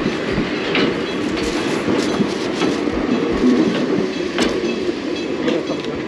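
Enoden electric train passing close by, a steady rumble with its wheels clacking irregularly over the rail joints.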